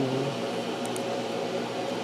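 Steady background hum and hiss of a small room. A drawn-out spoken "and" trails off at the start, and there is one faint click just under a second in.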